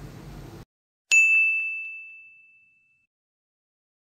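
Faint room noise cuts off abruptly, and about a second in a single bright bell-like ding sound effect strikes and rings out, fading away over about two seconds.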